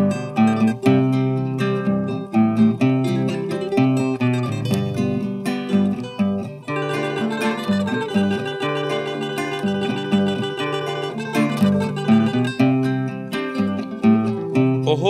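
Two acoustic guitars, one of them a classical guitar, playing together in an instrumental passage: picked notes over a steady strummed rhythm, with no voice.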